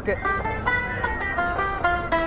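Electric taishōgoto (Taisho harp), its keys fretting the metal strings while they are plucked, playing a quick run of bright, twangy single notes through an amplifier.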